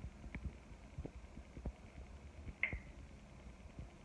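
Quiet small room with faint handling noise from a handheld camera: scattered soft clicks and knocks, and one short squeak about two and a half seconds in.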